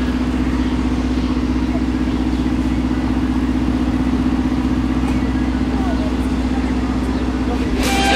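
A steady mechanical hum at one constant pitch, like a motor running nearby, with faint voices in the background.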